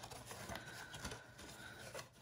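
Faint handling sounds of cardstock and a small metal binder ring as the ring is threaded through punched holes, with a few light ticks.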